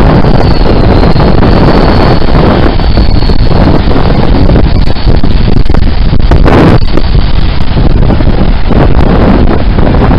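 Wind buffeting the camera's microphone: a loud, steady rumble, with ocean surf breaking on the beach beneath it.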